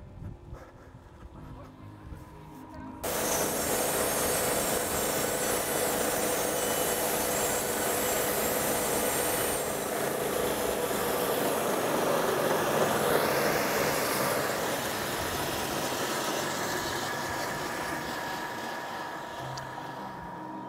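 Older electric band sawmill sawing a log lengthwise into a board. The motor runs quietly at first; about three seconds in the loud, steady sound of the blade cutting through the wood starts, with a steady whine running under it.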